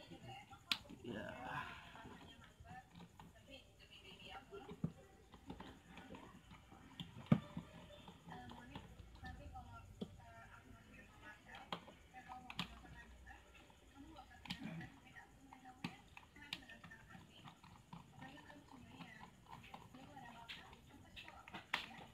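Small screwdriver clicking and scraping as it works a screw in a motorcycle speedometer's dial face, with light taps from the plastic instrument housing being handled. Scattered sharp clicks, the loudest about seven seconds in.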